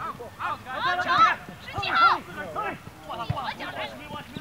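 Soccer players and people on the sideline calling and shouting to one another, the words not clear, loudest about a second in and again at two seconds. Two short dull thuds sound between the voices, one near the middle and one near the end.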